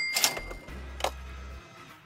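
Editing sound effect of sharp clicks with a short ringing tone that fades out, timed to a pop-up score graphic, over background music. Clicks fall at the start, about a quarter second in and again about a second in.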